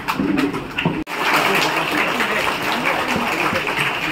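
An audience applauding. Separate claps in the first second break off suddenly about a second in, then thicker, continuous applause follows.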